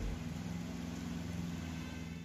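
Steady hiss of rain falling on a wet street, with a low, steady engine hum underneath.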